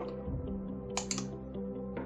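Two quick computer clicks about a second in, as a registry value is selected, over quiet background music with held notes.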